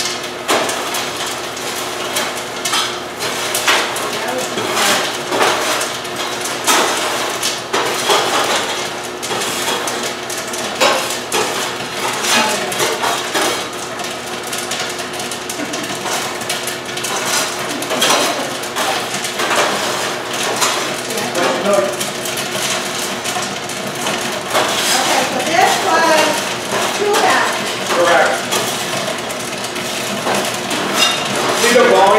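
Irregular clatter and clinks of a metal scoop working popped popcorn out of a stainless-steel popcorn machine's cabinet and into a plastic bag, going on throughout.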